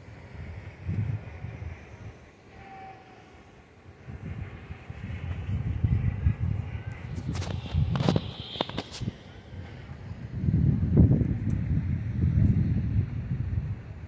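Wind buffeting the microphone in irregular low rumbling gusts, with a brief cluster of sharp clicks about eight seconds in.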